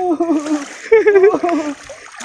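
A large eel splashing as it thrashes in shallow water while it is hauled out by hand on a line. A man's excited wordless exclamations run over it and are the loudest sound.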